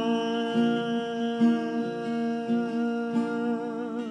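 A man's voice holds one long note to the end of a song, wavering with vibrato near the end, over steady strumming on an acoustic guitar.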